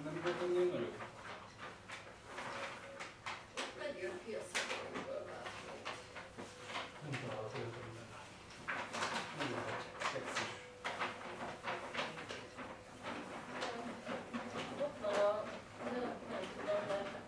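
Indistinct, unintelligible voices from out of view, with scattered short clicks and knocks.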